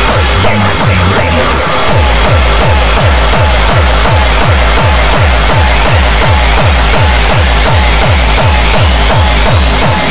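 Uptempo hardcore electronic music: a fast, hard kick drum at about three beats a second, each hit dropping in pitch, under dense synth layers, with a rising pitch sweep building over the second half.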